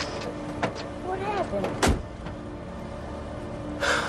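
A car door slamming shut about two seconds in, a single heavy thud, over the low steady rumble of the car, with a few lighter clicks before it.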